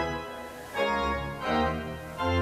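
Organ playing sustained chords over a bass line, the chords changing roughly every three-quarters of a second with short dips in loudness between them.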